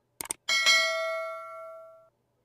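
Subscribe-button animation sound effect: a quick double mouse click, then a notification-bell ding that rings out and fades away over about a second and a half.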